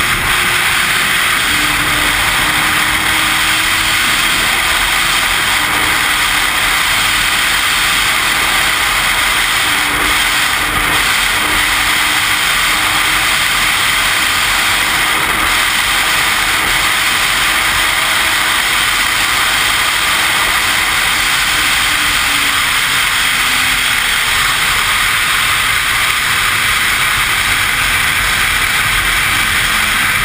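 Sportbike at speed, heard from an onboard camera: heavy wind rush on the microphone over a steady engine note. The engine note drops lower after about twenty seconds.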